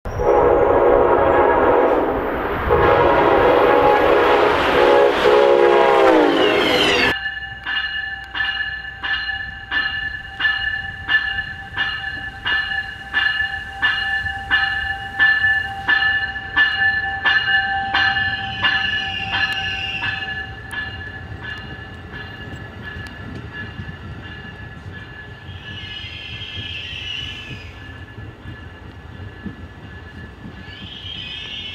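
Locomotive air horn sounding two long multi-note blasts, its pitch bending downward as the second ends. Then a train bell strikes about twice a second as an Amtrak Avelia Liberty trainset pulls in, fading after about 20 seconds into the quieter rolling noise and faint whine of the arriving train.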